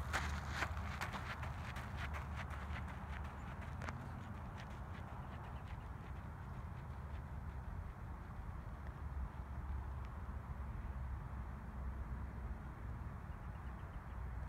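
Running footsteps on a rubberised track, about three strides a second, fading away over the first few seconds as the runner recedes. A steady low rumble runs underneath.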